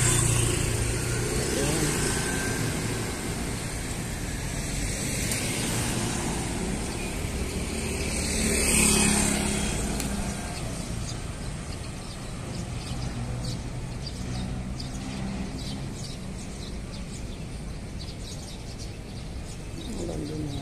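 Street traffic, with motorcycles passing close by: one at the start and a louder pass about nine seconds in, over a steady low rumble of road noise.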